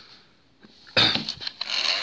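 As Seen On TV 'Crumby' poop-emoji mini tabletop vacuum switched on about a second in with a sudden knock, its small motor then running with a steady high whine.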